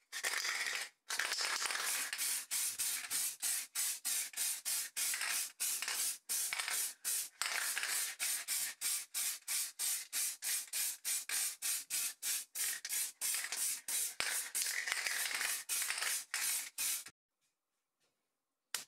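Aerosol spray can hissing in a long run of short bursts in quick succession, the nozzle pressed and released again and again, stopping about a second before the end.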